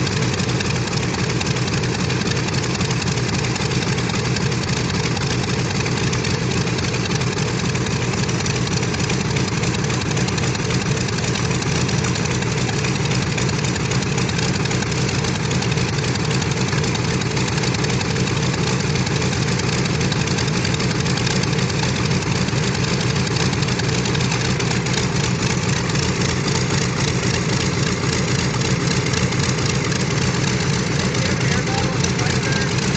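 Grumman F7F Tigercat's Pratt & Whitney R-2800 radial engines idling steadily, with a deep, even pulse and no change in speed.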